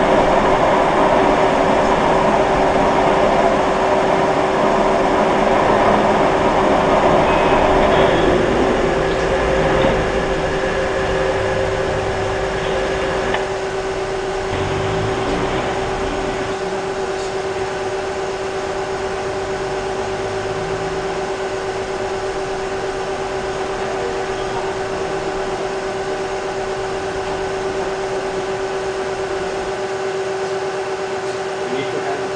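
Three-edge bearing concrete pipe testing machine running with a steady hum while loading a reinforced concrete culvert pipe, louder for the first ten seconds and then easing to a lower, even level.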